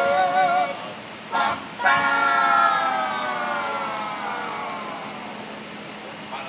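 Men's street vocal group singing in close harmony. After a short break about a second in, they hold one long chord that slowly sinks in pitch and fades away.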